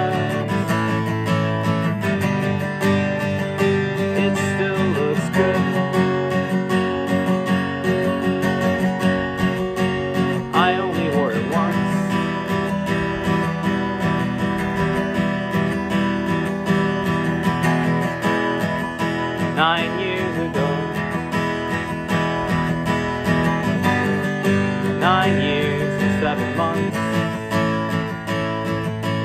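Taylor steel-string acoustic guitar strummed in a steady rhythm, with a few short vocal phrases over it.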